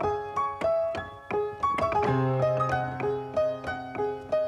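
Upbeat piano tune: bright chords struck in a bouncy rhythm about four times a second, with a deeper held bass note coming in about two seconds in.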